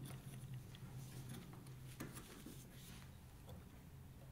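Faint handling noise of small acrylic pieces being held and turned on newspaper: light rustles and ticks, with one sharper click about two seconds in, over a low steady hum.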